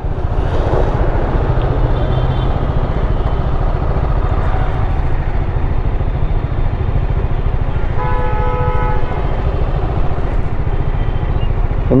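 Steady rumble of a motorcycle in dense city traffic. A vehicle horn sounds once for about a second, roughly two-thirds of the way in.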